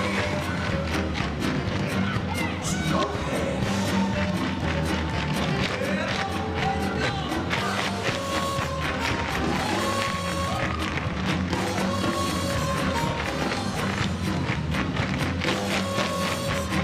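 A large troupe's tap shoes clattering on the stage floor over recorded music.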